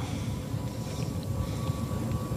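Steady low rumbling drone with a faint high steady tone over it: the background hum of a spaceship interior in a film soundtrack.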